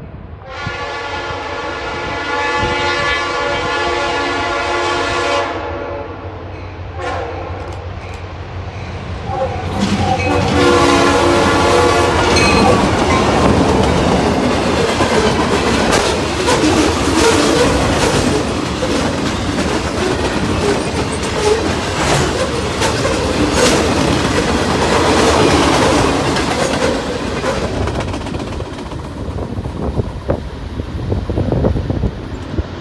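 Diesel locomotive air horn sounding a long blast, then a second shorter blast about ten seconds in. The train then passes close by with loud rumbling and rhythmic clickety-clack of wheels over rail joints.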